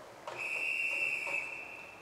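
A single long, steady, high-pitched whistle blast of about a second and a half, blown by an official on a swimming pool deck.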